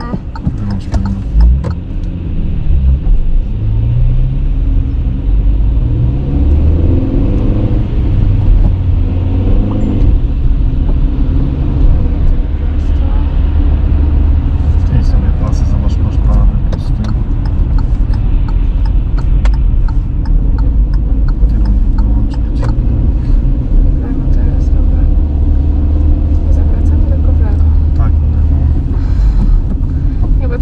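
Car engine and tyre noise heard from inside the cabin as the car pulls away from a standstill: the engine note rises over the first several seconds of acceleration, then settles into a steady low rumble while cruising at low city speed.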